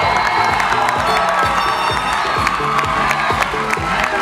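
Dance music with a steady beat plays loudly over an audience cheering and shouting.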